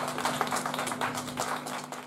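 Small audience clapping in scattered, uneven claps, with a steady low electrical hum from the stage gear underneath, both fading away near the end.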